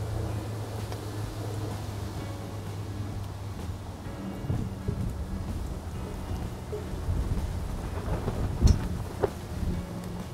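Steady low rumble under irregular scrapes and light knocks as a wooden spatula scrapes thick fried laksa paste out of a pan into a ceramic bowl, with one sharper knock near the end.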